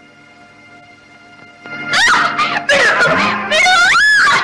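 Quiet sustained background music, then about two seconds in a dog howling and whining, loud cries that glide up and down and swoop sharply upward near the end.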